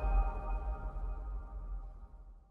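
Tail of an electronic logo sting fading out: several held ringing tones over a deep bass rumble, slowly dying away.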